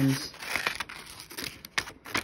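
Scissors snipping through construction paper, with the paper crinkling as it is cut and a couple of sharper snips near the end.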